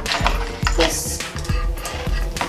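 Plastic K'Nex rods and connectors clicking together as they are pushed into place, a few short sharp clicks, over light background music.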